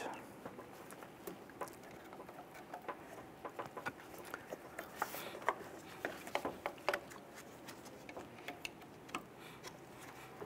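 Small plastic clicks and scrapes from a pocket screwdriver prying up the locking tabs on a headlamp wiring connector as the connector is wiggled loose. Faint and irregular, thickest between about three and seven seconds in.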